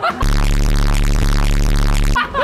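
A loud, distorted, steady low buzzing sound effect laid over the picture in the edit. It starts suddenly just after the start and holds one unchanging tone.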